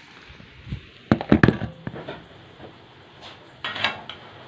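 Hot dogs frying in oil, a faint steady sizzle, broken by a quick cluster of sharp knocks and clicks about a second in and a short burst near the end.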